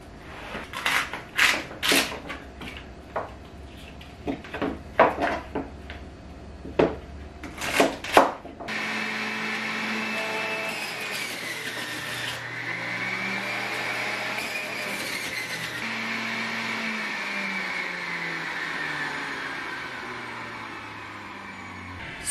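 Several sharp knocks of a knife cutting celery on a plastic cutting board, then about nine seconds in a centrifugal juicer's motor starts and runs steadily, its whine wavering in pitch as celery stalks are pushed down the feed chute under load. The motor is really loud.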